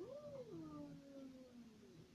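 A cat meowing once: one long call that rises and then falls in pitch, fading out over about two seconds.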